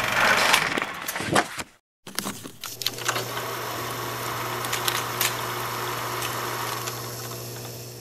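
A short noisy transition sweep with clicks, then a brief silence. Then a film-projector-style whirr: a steady low hum with scattered clicks and crackle, fading out near the end.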